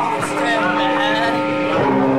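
Live punk band playing loud, distorted, sustained droning chords that break off briefly near the end, with crowd voices shouting over them.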